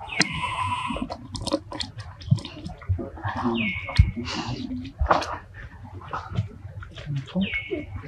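Macaques calling: short high-pitched calls, two of them dropping in pitch and then holding, over scattered clicks and rustling.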